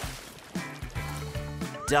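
Background music with a steady low beat, over water splashing as it is poured into a foil-lined pit; the splashing fades within the first half-second.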